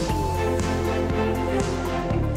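Television news opening theme music: an electronic piece with a held low bass note under sustained pitched notes and short sharp hits.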